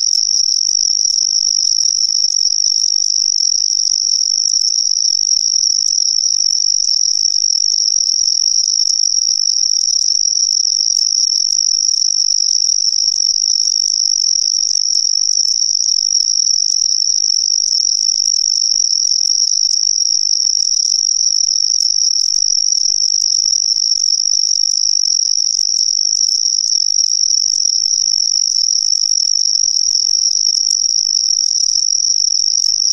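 Continuous high-pitched insect chorus: a steady, unbroken shrill trill that does not change in pitch or level.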